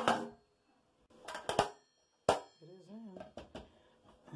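Chrome recessed toilet paper holder handled and pushed into a hole cut in drywall: several sharp metal knocks and clinks with a short ring, one at the start, a close pair about a second and a half in, and another just past two seconds.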